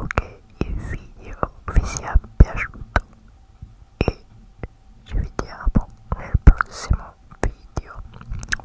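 Close-miked mouth clicks and breathy, unintelligible whispering into hands cupped around a microphone grille: irregular sharp clicks among short airy bursts, thinning out to a quieter stretch in the middle.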